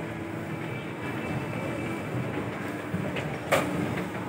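A 1996 LG escalator running steadily on its way down: an even mechanical drone with a faint steady low tone. A sharp click comes near the end as the steps reach the landing.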